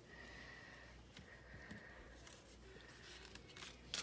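Near silence: room tone with a faint steady high hum, a few faint ticks and a sharper click near the end.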